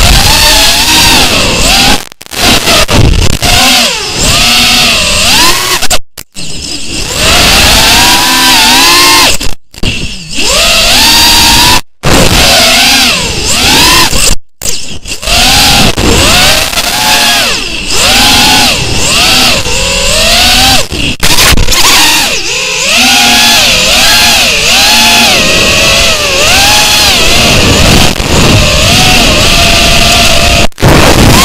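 FPV racing quadcopter's electric motors and propellers whining, the pitch swooping up and down with each throttle punch, over a steady propeller hiss. The sound cuts out abruptly several times.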